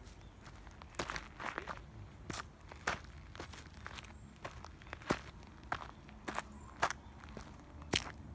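Footsteps on a gravel path and dry fallen leaves, uneven steps starting about a second in.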